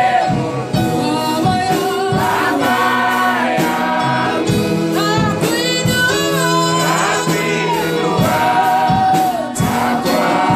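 Gospel worship song: a choir of voices singing together over instruments with a steady beat.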